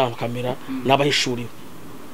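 A man speaking, his voice stopping about a second and a half in.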